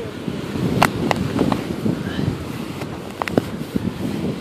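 Plastic hand trowel digging into loose beach sand to unearth a metal detector target, with scrapes and several sharp clicks, over steady wind noise on the microphone.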